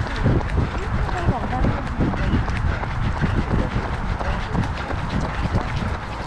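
Running footsteps on a tarmac path, the camera-carrier's own steady stride jolting the microphone in a regular beat of low thuds, about three a second, mixed with other runners' footfalls close by.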